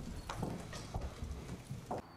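Faint footsteps on a hard floor, soft irregular steps about three a second, over quiet room noise.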